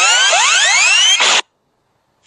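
Electronic intro sound effect: many overlapping tones sweeping upward, ending in a short burst of noise a little over a second in, then cutting off to silence.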